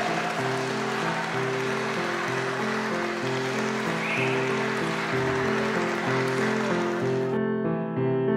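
Audience applauding over soft background piano music; the applause cuts off abruptly near the end, leaving the piano alone.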